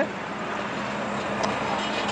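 Steady outdoor street noise with a faint low hum, like road traffic.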